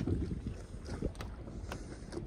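Wind buffeting the microphone over water lapping at a sailboat's hull, with a couple of faint ticks about a second in and near the end.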